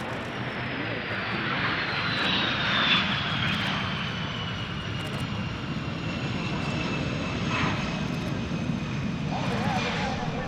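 Twin jet engines of a US Navy F/A-18 Super Hornet-family fighter running on the runway: a steady roar with a high whine that falls slowly in pitch.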